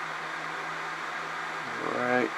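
Steady background hiss with a faint low hum, even throughout, with no distinct events.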